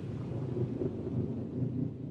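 A low, steady rumbling noise with no clear tone, slowly weakening.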